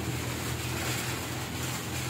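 Steady background noise: a faint low hum under an even hiss, with no distinct event.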